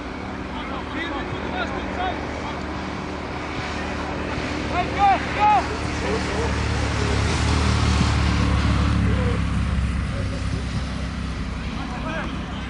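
Outdoor football-pitch ambience: a few short distant shouts from players, then a low rumble that swells about halfway through and fades near the end.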